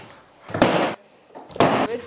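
Skateboard smacked down onto a wooden ramp twice, about a second apart, each a sharp knock that dies away quickly.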